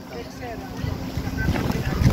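Wind buffeting the camera microphone: an uneven low rumble that grows stronger toward the end, with faint voices in the background.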